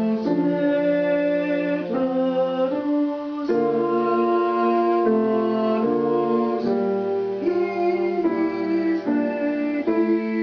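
A solo singer's slow melody of held notes over grand piano accompaniment, the tune stepping from note to note about every second.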